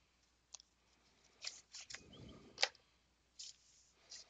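Faint clicks and taps of a metal Blu-ray steelbook case being handled, about six short sounds with the sharpest a little past halfway.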